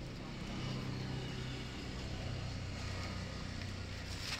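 A vehicle engine running steadily at low revs, a low hum.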